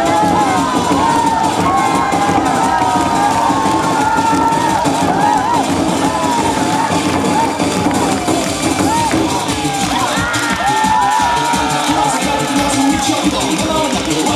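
Korean barrel drums played loudly in a fast rhythm by several drummers, with a crowd cheering and shouting over the drumming.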